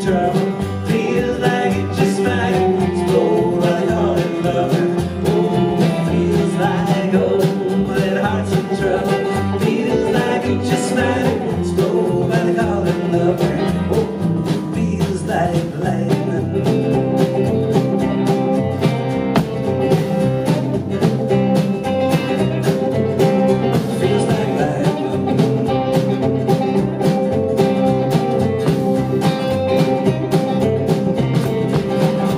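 Live acoustic folk-country band: strummed steel-string acoustic guitars and a plucked upright bass playing a song, with a voice singing over it for part of the time.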